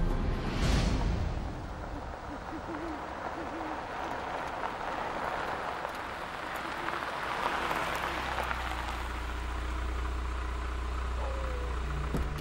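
Night-woods ambience with an owl hooting, opened by a brief whoosh near the start. Then a dark SUV rolls in over gravel, and its engine settles into a steady low idle from about eight seconds in.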